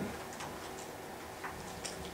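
Quiet room tone with a few faint, unevenly spaced ticks or clicks.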